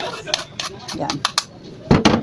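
Handling of raw squid at a ceramic bowl on a cutting board: a few short clicks and taps, then a dull thump near the end; a woman says one brief word.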